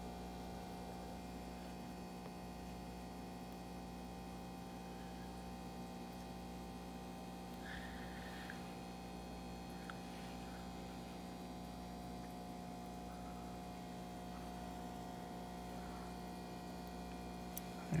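A steady electrical hum, unchanging throughout, with a fainter higher steady tone over it.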